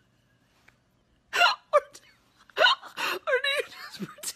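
A woman laughing helplessly without words. After a near-silent start, two sharp gasping laugh bursts come about a second and a half in, then a wavering, whimpering laugh near the end.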